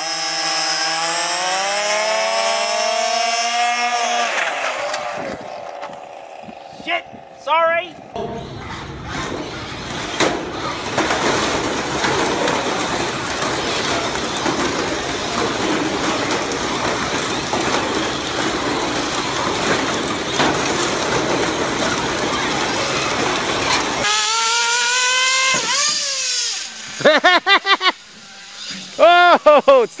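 RC car motors revving and whining past, their pitch rising and falling in several short bursts. Through the middle there is a long steady din of many small cars and voices around an RC demolition derby.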